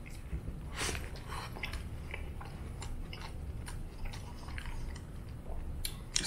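A man chewing a mouthful of beef burrito close to the microphone: soft, wet mouth clicks at irregular intervals, the sharpest about a second in.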